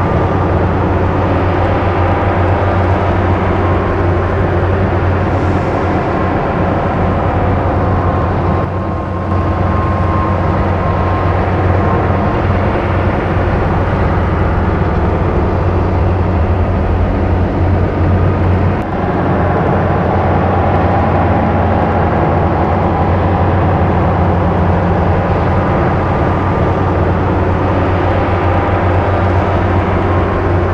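A boat motor running steadily at cruising speed, a loud, even low drone, dipping briefly twice.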